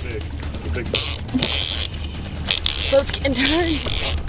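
Shimano TLD two-speed lever-drag reel being worked during a fight with a big shark, with mechanical clicks and rustling from the reel over a steady low hum. A faint voice murmurs near the end.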